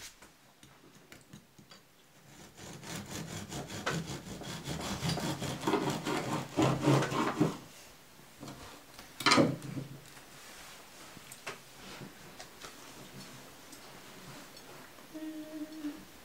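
Bread knife sawing through the crust of a round soda bread loaf: a run of quick rasping strokes that grows louder over several seconds, then one louder crunch about nine seconds in, with softer scraping after it.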